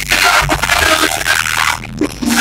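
Live hip-hop music over a concert PA, bass-heavy and loud, heard from within the crowd with the dense, blurred sound of a phone recording.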